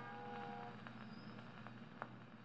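A 78 rpm shellac record ends on a Victor Orthophonic Victrola with a steel needle: the dance band's last held notes die away in about the first second. After that only faint surface hiss is left, with two light ticks under a second apart.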